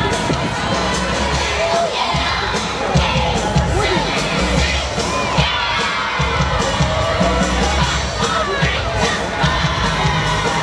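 A crowd of spectators, children's voices among them, shouting and cheering, with parade music playing underneath.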